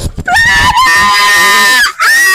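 A person's long, high-pitched excited scream, held for about a second and a half, with a second one starting just at the end.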